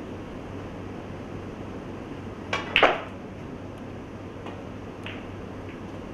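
Snooker balls clicking on the table: a light tap about two and a half seconds in, then a sharp double click of ball striking ball, the loudest sound, with a couple of fainter clicks later, over a steady low room hum.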